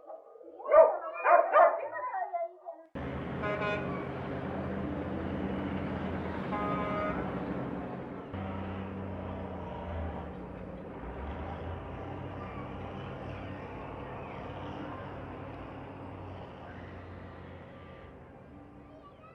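A truck engine running steadily, starting abruptly with the cut and slowly fading. Two short higher-pitched calls sound over it, one just after it begins and one a few seconds later.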